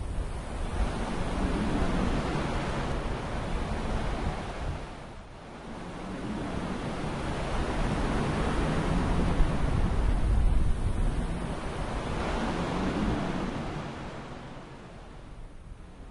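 A rushing noise effect, like storm wind or surf, that swells and ebbs. It dips about five seconds in, builds again, and fades away over the last few seconds.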